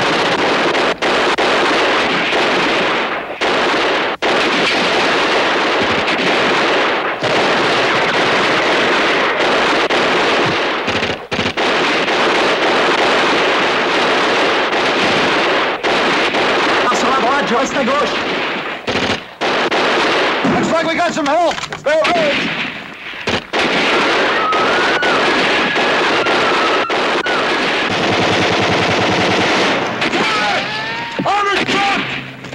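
Battle sound effects from a WWII drama: dense, nearly continuous machine-gun and rifle fire, with a few brief breaks. Voices are heard in the second half.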